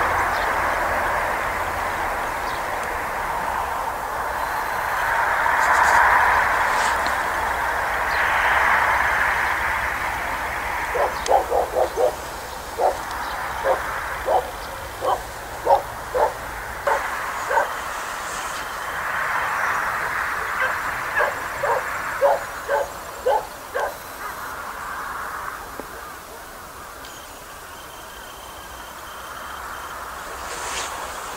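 A dog barking repeatedly in short barks over a steady rushing background noise that swells and fades. The barks start about a third of the way in and stop about two-thirds through.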